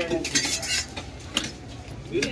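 Steel knife working a large fish on a wooden chopping block: a short scrape in the first second, then a single sharp tap of the blade.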